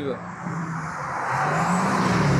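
Cars on a race track running past close by: a steady engine note with tyre and road noise that grows louder from about halfway through as they come near.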